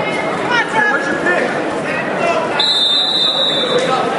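Spectators' voices and shouts fill a gymnasium. About two and a half seconds in, a steady high whistle sounds for about a second, a referee's whistle stopping the wrestling.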